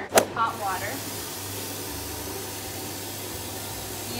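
A kitchen faucet running, its water streaming into a saucepan with a steady hiss. A sharp click comes just at the start.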